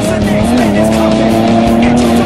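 Rock music with drums and long held notes that step up and down in pitch.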